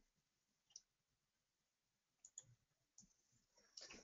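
Near silence, broken by a few faint, short clicks scattered through the pause: about one a second in, a pair a little past two seconds, one at three seconds and a couple near the end.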